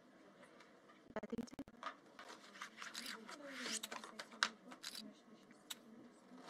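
Playing cards being gathered and slid off a felt table by hand: papery scrapes and a scatter of sharp clicks, with faint voices behind.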